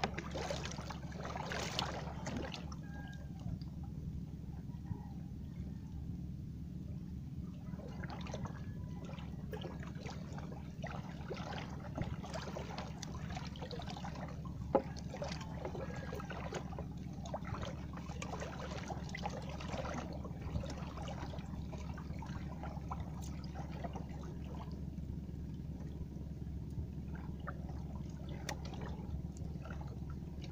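Water trickling, dripping and splashing around a small wooden fishing boat, with scattered light clicks and knocks and one sharper knock about halfway, over a steady low hum.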